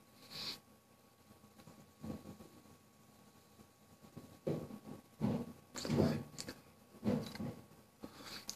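Breath and mouth sounds of a man taking a drag on a vape: a short sharp intake at the start, then several soft, breathy puffs and mouth noises in the second half as he draws on and exhales the vapor.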